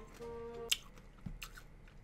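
Faint mouth sounds of a person eating a sour candy: a few soft clicks and smacks, with a brief faint hum near the start.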